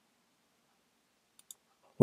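Near silence, broken by two faint computer-mouse clicks close together about a second and a half in.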